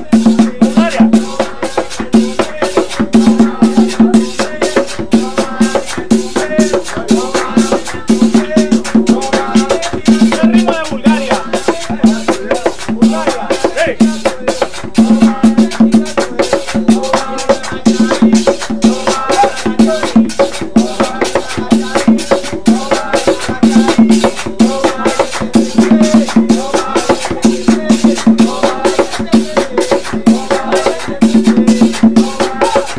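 A son de negro rhythm played by hand on a single-headed tambor drum, struck with both palms and fingers in a steady, fast pattern. Dense small percussion strokes run over the drum throughout, with a voice line carried on top.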